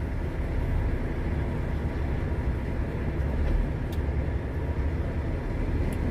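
Heavy truck's diesel engine idling steadily, a low rumble heard from inside the cab.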